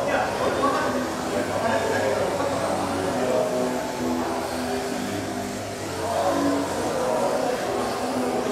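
Indistinct voices and background music echoing in a large hall, at a steady level.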